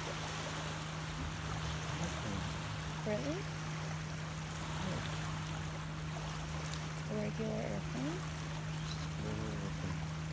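Small waves lapping on a sandy lake shore, a steady wash of water, over a steady low hum, with faint voices in places.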